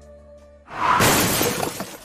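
The faint sustained tones of a rap track's outro, then, about two-thirds of a second in, a loud shattering-crash sound effect swells up and carries on to the end: the opening of a record label's logo sting.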